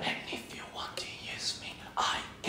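Faint, breathy voice sounds, whisper-like and without a sung pitch, coming in short puffs.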